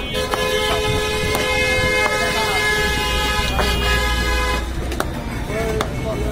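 A vehicle horn sounding in one long steady blast that cuts off about four and a half seconds in, with a low engine rumble under its last second or so. Sharp knocks of a meat cleaver chopping on a wooden block come through now and then.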